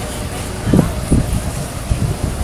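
Steady low outdoor rumble, with a few short muffled thumps starting about three quarters of a second in.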